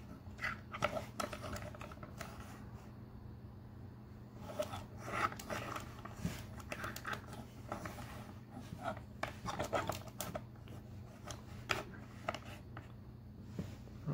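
Scattered small clicks and taps of hard plastic as a Transformers Generations Skullgrin action figure is posed by hand, its limbs and pickaxe being adjusted, over a low steady hum.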